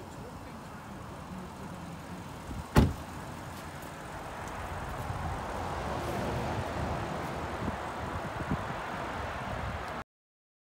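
A car door shutting with a single heavy thud about three seconds in. Behind it is a steady outdoor background noise that grows louder through the second half, with a couple of small knocks near the end.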